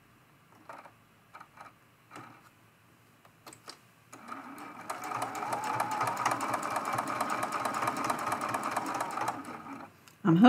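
Juki sewing machine stitching fabric at a steady, fast rate for about five seconds, starting about four seconds in and stopping just before the end. Before it starts there are a few faint taps as the fabric is handled.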